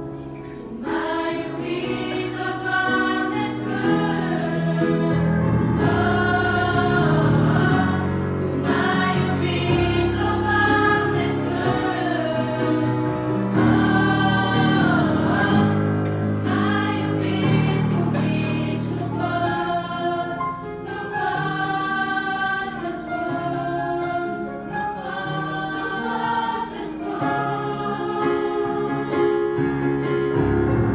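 A girls' choir singing a hymn in several voices, over sustained low instrumental accompaniment.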